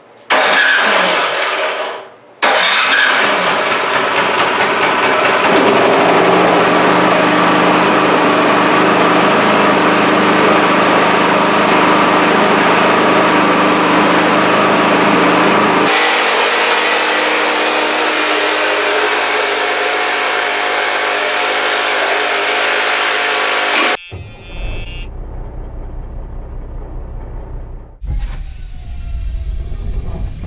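Craftsman snowblower's small single-cylinder engine, on choke, starting with a short burst and then catching and running steadily. It runs after its carburetor's clogged emulsion tube was cleaned, the fix for it only running when primed. The engine sound drops away about six seconds before the end.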